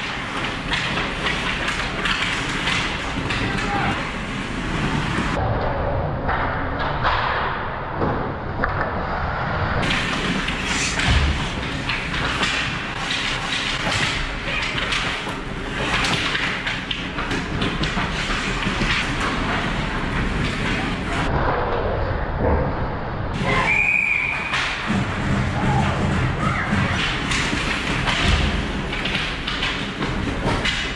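Ice hockey play around the goal: skates scraping the ice, sticks and puck clacking and thudding against the net and boards, under indistinct shouting from players and spectators. A brief high whistle sounds about 24 seconds in.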